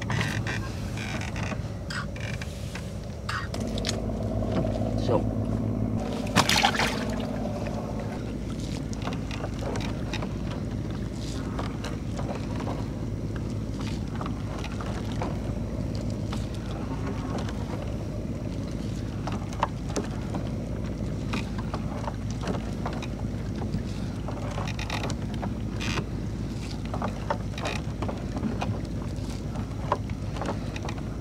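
A boat engine drones steadily from about three seconds in, under the rustle, drips and small knocks of a monofilament gill net being hauled hand over hand into a small wooden boat. There is one louder knock about six seconds in.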